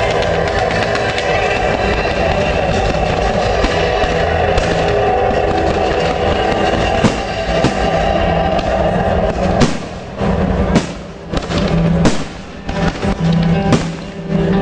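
Loud music playing alongside a fireworks display, with a couple of sharp firework bangs about seven seconds in. From about ten seconds the music drops back and a quick series of sharp firework reports takes over.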